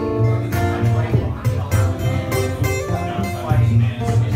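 Acoustic guitar strummed in a steady rhythm, chords ringing on between strokes.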